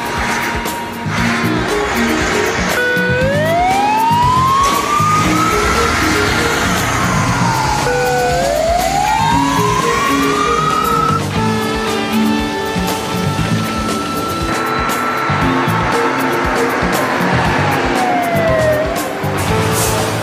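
Fire engine siren wailing: it rises slowly, falls, rises again, holds a steady high note for several seconds, then falls away near the end. Background music plays underneath.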